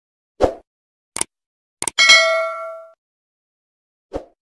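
Sound effects of a YouTube subscribe-button animation: three short clicks, then a bell-like ding about two seconds in that rings out for nearly a second.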